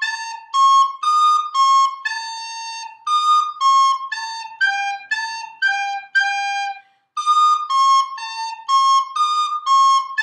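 Plastic soprano recorder playing a simple blues melody that climbs to high D, in short separate tongued notes with a few held longer ones. The tune breaks off briefly about seven seconds in.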